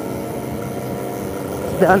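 Two-stroke motorcycle engine of a Kawasaki Ninja RR running steadily under the rider while moving along the road, heard from the bike itself.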